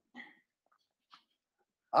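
A man's short, faint breath about a quarter second in, between spoken phrases, then a quiet pause until his speech resumes near the end.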